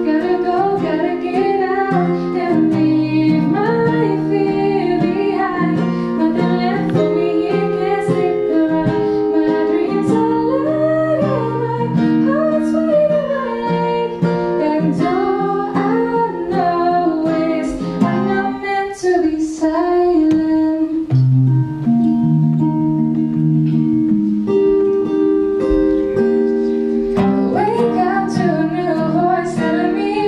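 A young woman sings into a microphone over fingerpicked acoustic guitar. About two-thirds through, the voice stops for a short guitar-only passage, and the singing comes back near the end.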